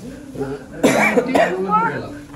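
A person coughing sharply about a second in, followed by voiced sounds, amid people talking.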